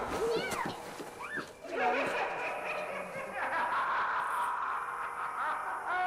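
Halloween horror sound effects: a wavering, voice-like cry in the first second and a shorter one just after, then a steady noisy wash for the rest.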